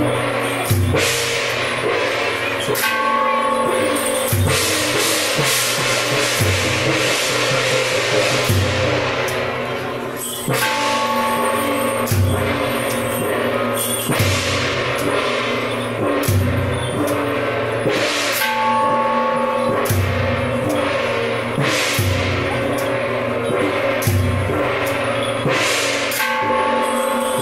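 Temple procession percussion of large drum, gongs and cymbals playing a steady beat, a deep drum stroke coming about every two seconds under clashing cymbals and ringing gongs.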